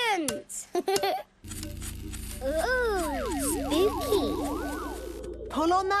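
A few sharp clicks of a cartoon Newton's cradle's balls knocking together, then background music with swooping, gliding tones over a low hum.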